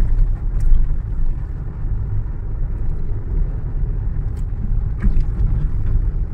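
Steady low rumble of a moving car, engine and tyre noise heard from inside its cabin.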